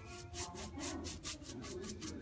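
A chip brush scrubbing thick gel stain onto a painted picture frame in quick, repeated strokes, about four or five a second.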